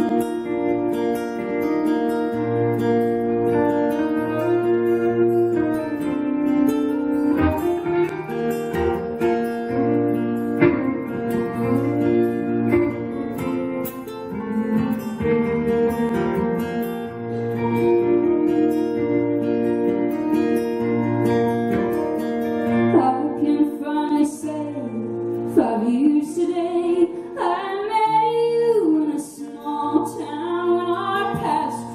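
Live band playing a slow song: acoustic guitar strumming over electric guitar, bass and keyboard chords, with drums. A woman sings, most clearly in the last several seconds.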